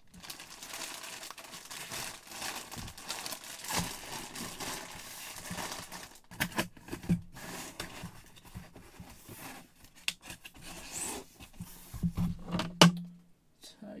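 Plastic bag around a jersey crinkling as it is handled for the first several seconds, then cardboard box handling with scattered knocks, the sharpest and loudest knock near the end.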